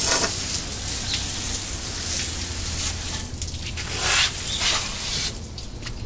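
Water spraying from a hose nozzle against a truck's steel chassis, a steady hiss and spatter that varies as the jet moves, rinsing the soap off; the spray stops shortly before the end.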